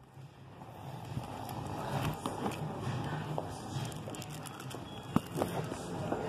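LP records in a wooden bin being flipped through by hand: cardboard sleeves sliding and knocking against one another in scattered soft clicks, with one sharper knock about five seconds in.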